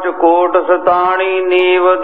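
A man chanting in a sung, drawn-out voice during a Sikh katha. His pitch bends briefly in the first second, then settles into a long, steady held note.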